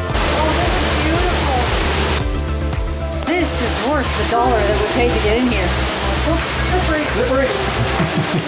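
Roar of a large waterfall over background music with a steady beat, with indistinct voices in the mix. The water noise breaks off briefly about two seconds in, then returns.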